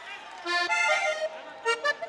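Vallenato button accordion playing a quick run of short stepped notes about half a second in, then a brief second flourish near the end.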